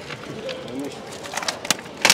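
A low murmuring voice with wavering pitch, then a few sharp clicks near the end.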